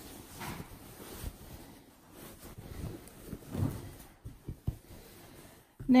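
Cotton fabric rustling and brushing as a cushion insert is pushed into a sewn cover, in uneven handling noises with a louder push about halfway through and a few short taps after it.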